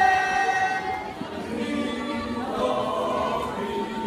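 Choir singing: a long held note fades out about a second in, then the voices begin a new phrase.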